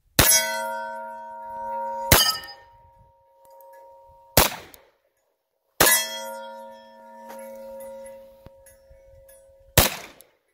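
Five shots from a 1944 Remington Rand 1911A1 .45 ACP pistol, roughly one every two seconds, the last near the end. Most are followed by the clang of a hit steel target ringing on, holding two to three seconds after the first and fourth shots.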